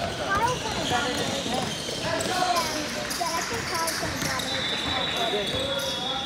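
Voices of players and spectators shouting in a gym during a basketball game, with a basketball bouncing on the court. Near the end a steady high tone sounds for about a second and a half.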